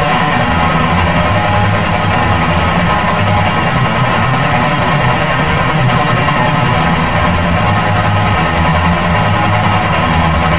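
Heavy metal instrumental passage: distorted electric guitar over a heavy bass and drum backing, loud and steady.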